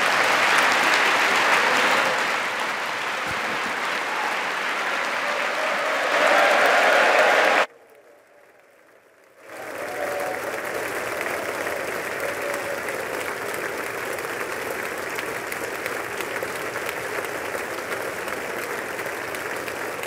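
Large audience applauding steadily. The applause cuts off suddenly about eight seconds in, leaving under two seconds of near silence, then resumes and runs on.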